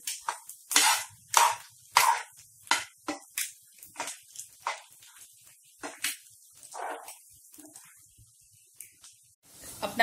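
A metal spoon scraping and tapping against a nonstick frying pan as scrambled egg is broken into small pieces: short, sharp strokes about one or two a second, thinning out near the end.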